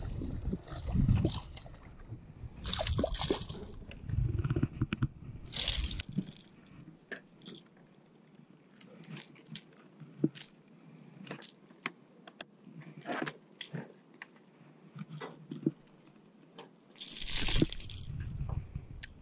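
Handling noise as a chain pickerel is landed and unhooked: low rumbling and splashy noise at first, then scattered small clicks and scrapes of the metal lip-grip tool and the lure's treble hooks being worked free of the fish's mouth, with a louder rush of noise near the end.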